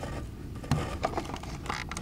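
Light handling noise: a sharp tap about three quarters of a second in, then small clicks and scrapes and a short rustle near the end.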